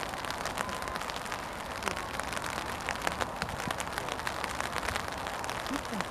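Steady rain falling, with many small, sharp drop ticks over an even hiss.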